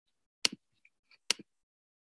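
Two sharp clicks about a second apart, each a quick press-and-release pair, from a computer mouse being clicked.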